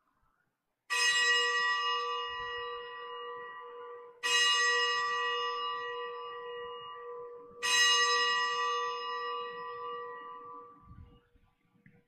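Altar bell struck three times, a few seconds apart, each stroke ringing out and fading before the next. It is the consecration bell that marks the elevation of the chalice.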